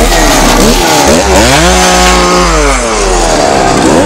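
A chainsaw's two-stroke engine is revved hard about a second in, held at high revs, then let fall back toward idle near the end.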